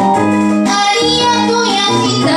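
A woman singing a song live into a microphone, accompanied by her own keytar playing sustained electronic keyboard notes that change every fraction of a second.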